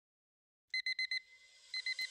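Digital alarm clock beeping: a quick run of four short, high beeps, a brief pause, then the next run starting near the end.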